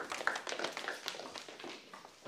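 Hurried footsteps of several people running across a tiled floor, a quick irregular patter of light taps that thins out near the end.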